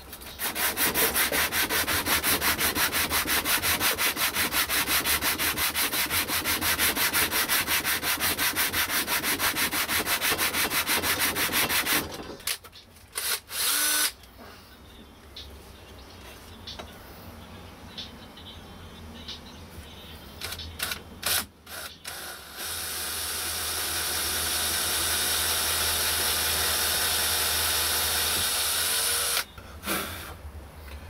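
A small wooden piece rubbed by hand on sandpaper, in fast, even back-and-forth strokes for about twelve seconds. After a stretch of quieter handling with a few small knocks, a cordless drill starts about two-thirds of the way in and runs steadily for about seven seconds before stopping.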